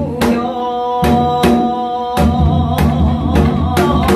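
A woman singing a Gyeonggi folk song, holding long notes, while she accompanies herself on a janggu (Korean hourglass drum) in a fast jajinmori rhythm: sharp stick strokes mixed with deep, booming strokes.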